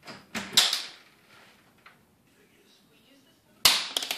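A few sharp knocks and a clatter in the first second, then a single loud bang near the end.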